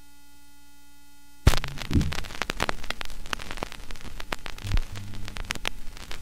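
Turntable stylus set down on a 7-inch 45 rpm vinyl single. A steady mains hum, then a thump as the needle lands about a second and a half in, followed by crackles and pops from the record's lead-in groove.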